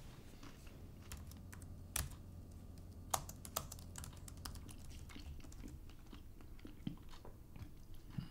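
Typing on a laptop keyboard: faint, irregular key clicks, with a few sharper taps about two and three seconds in.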